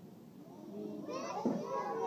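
A group of young children's voices, many at once, starting about a second in after a quieter moment.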